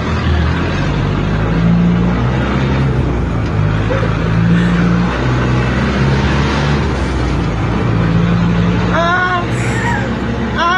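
Bus engine and road noise heard from inside the moving bus, a steady drone whose engine pitch shifts up and down. Near the end a voice calls out briefly.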